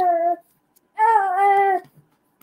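A baby of a couple of months crying: one drawn-out cry tails off, then another long cry starts about a second in. It is the infant waking up.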